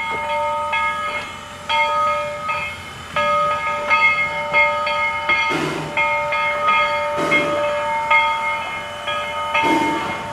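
Two-foot-gauge steam train rolling slowly past with its freight cars. A set of steady high squealing tones cuts in and out throughout. In the second half the locomotive gives four slow puffs of exhaust steam, about two seconds apart.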